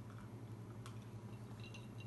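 Faint sipping and swallowing from a glass of whiskey and lemon-lime soda over ice. Near the end come a few light clinks of ice against the glass as it is lowered.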